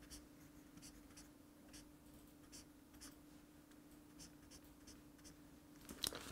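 Faint, irregular scratching strokes of a felt-tip highlighter marker drawn across the paper page of a book, over a thin steady low hum.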